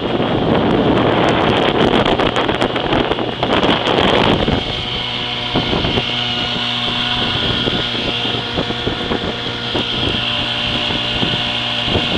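Vintage 7.5 hp Evinrude two-stroke outboard motor running steadily under way, pushing the boat. A loud rushing noise lies over it for the first four seconds or so, then eases.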